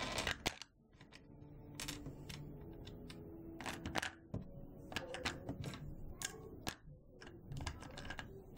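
Small polymer clay charms clicking and rattling against a clear plastic compartment organizer as a hand handles and shifts them: a run of irregular light clicks and knocks.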